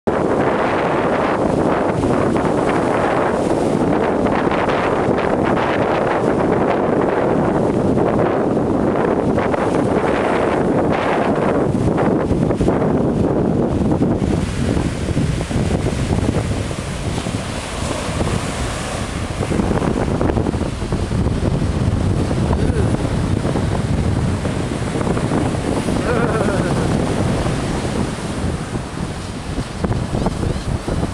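Wind buffeting the microphone over breaking ocean surf, a loud, even rushing noise that eases a little about halfway through.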